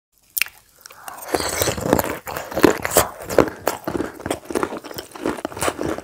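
Food being chewed close to the microphone: dense, irregular crunching and crackling. There is a single sharp click just before it begins.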